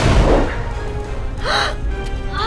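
An explosion sound effect: a sudden loud blast, heavy in the low end, fading over about half a second, over background music. A short vocal gasp or cry comes about one and a half seconds in.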